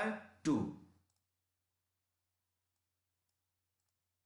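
A man's voice for about the first second, then near silence with a few very faint clicks.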